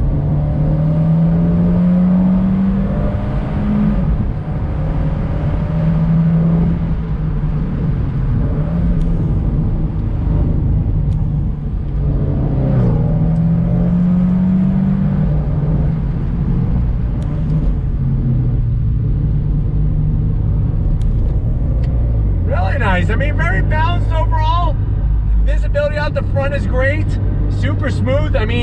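Turbocharged 1.4-litre four-cylinder of a Fiat 124 Spider Abarth, heard from the open cabin. Its note climbs twice under acceleration, each time dropping at an upshift, then runs steadier and settles lower near the end, over constant road and wind noise.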